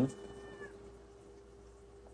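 A cat meowing faintly in the background: one thin, high call in the first second that dips in pitch as it ends, over a steady low hum.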